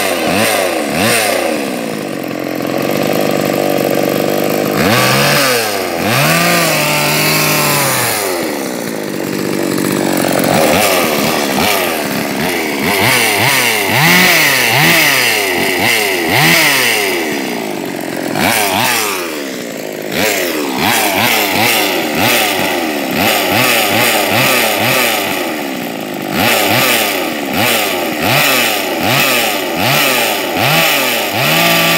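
Two-stroke chainsaw engine running with no cutting load, revved up and down again and again in short blips of the throttle, with only brief steady stretches between.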